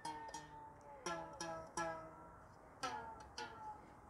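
Tightly tensioned wires strung across a wooden beehive frame being plucked one after another, about seven times, each giving a short ringing note at a slightly different pitch, like a guitar string. The wire is taut enough to pluck a tune from it, the sign of correctly tensioned frame wire.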